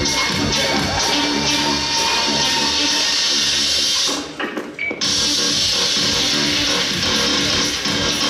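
Loud music playing, dropping away briefly about four seconds in and then coming back in.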